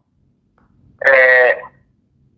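A man's voice: after a short pause, one drawn-out syllable held at a steady pitch for about half a second.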